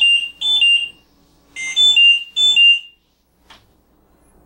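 Electronic alarm of a home ventilator beeping: two pairs of two-note beeps, each stepping from a higher tone down to a lower one, within the first three seconds, followed by a faint click.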